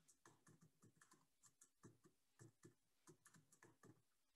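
Very faint computer keyboard typing: short, irregular key clicks, several a second.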